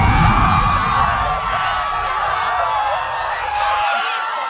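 Fire-explosion sound effect: a deep rumbling burst that carries on and dies away just before the end, with many high wavering tones over it.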